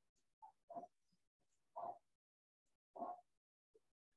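Three short, faint animal calls about a second apart, with near silence between them.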